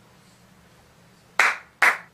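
Two loud, sharp claps about half a second apart, near the end.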